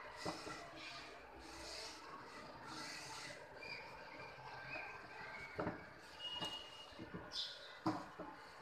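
Hand screwdriver turning screws into a wooden mandir: faint rasping scrapes of metal on wood, then a few sharp light knocks in the second half, the loudest near the end.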